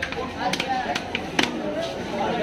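A heavy knife chopping through pieces of queen fish into a wooden chopping block: about four sharp chops, the loudest about one and a half seconds in. Voices chatter in the background.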